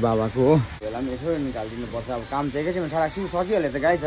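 Speech: a person talking continuously, with nothing else standing out.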